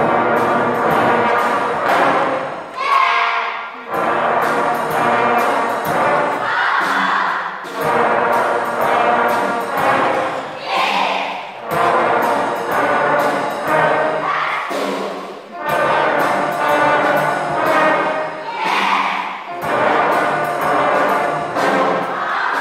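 Children's brass band playing together, cornets, baritone horns and trombones, some of the trombones coloured plastic ones. The music goes in phrases a few seconds long with short breaks between them.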